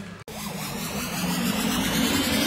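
Rising whoosh of a TV show's transition sound effect after an abrupt cut, growing steadily louder over a low steady drone as it builds into electronic music.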